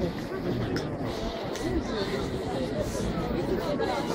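Crowd of spectators chattering: many overlapping voices with no clear words, steady throughout.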